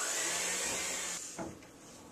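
Electric hand mixer running steadily with its twin beaters creaming butter and sugar in a bowl, a steady whir that dies away about a second and a half in.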